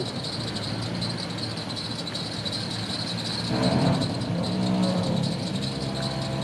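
Toyota FJ Cruiser's V6 engine running at low revs as the truck crawls down over rocks, its note swelling briefly a little past halfway. Insects buzz steadily with a high-pitched drone.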